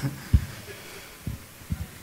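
Three soft, low thumps over faint room noise: one about a third of a second in, two near the end.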